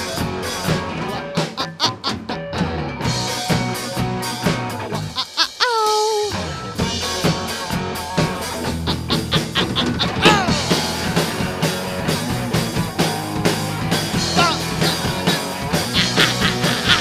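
Three-piece rock band playing live: drum kit with cymbal crashes, electric bass and electric guitar, with sung vocal lines over them. The bass and drums drop out briefly about five seconds in, then the full band comes back.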